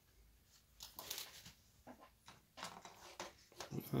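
Handling noise from laser-cut wooden model kit parts being moved and set into place on a worktop: a string of irregular light rustles and soft taps that starts about a second in.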